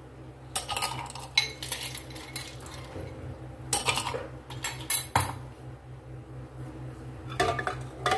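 Ice cubes spooned into a glass wine glass, clinking several separate times against the glass and the metal spoon, with a steel ladle knocking on a glass bowl near the end.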